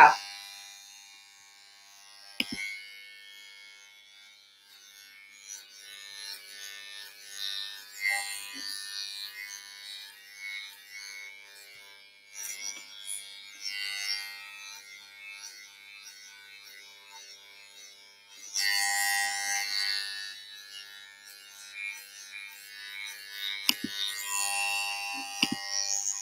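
Electric hair clippers buzzing on and off as they cut hair, louder for a couple of seconds about two-thirds of the way in.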